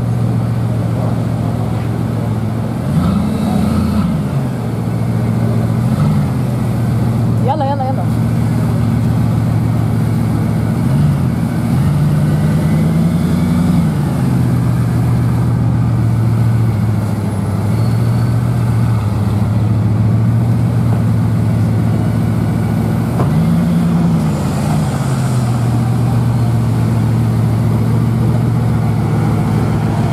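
Bugatti Veyron 16.4's quad-turbo W16 engine idling steadily, its note rising briefly with light throttle blips a few times and settling back to idle.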